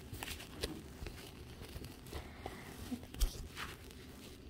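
Faint, scattered rustling and light clicks as the propped-up camera is handled and settled into place.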